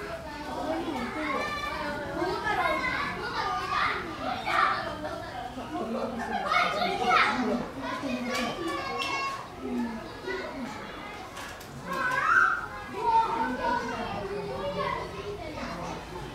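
Many children's voices talking and calling out over one another, a busy crowd of young onlookers, with a few louder shouts about seven and twelve seconds in.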